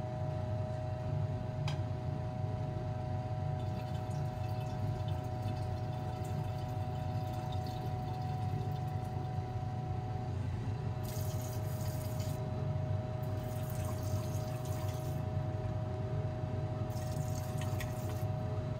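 Rinse water being decanted off gold powder from a glass beaker into a glass Erlenmeyer flask. There are two pours a little past the middle and a shorter splash of water near the end, over a steady low hum.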